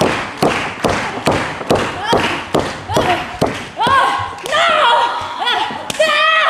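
A steady rhythm of heavy thuds, a little over two a second, in a large hall. Near the end a woman's raised voice comes in over it.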